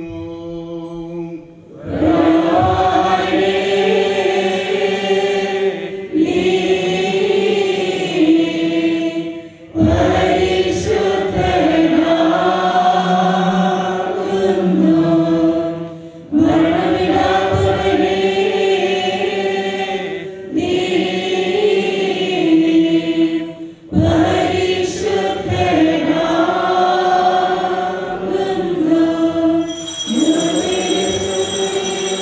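Choir and congregation singing a Syriac Orthodox liturgical chant in Malayalam, in sung phrases of about four to seven seconds with short breaks between them.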